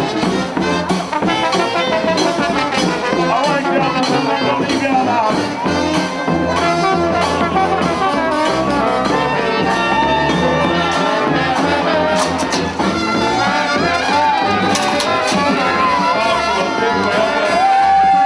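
Brass band playing New Orleans jazz: sousaphone, saxophone, trombone and trumpet over a steady bass-drum beat.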